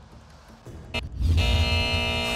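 Short electronic music stinger for a TV show's logo transition: a click about a second in, then a loud held chord with deep bass.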